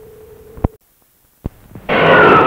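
A steady hum on an old film soundtrack stops with a click, then comes a moment of dead silence and a second click: a splice between two commercials. A loud rushing noise begins right at the end.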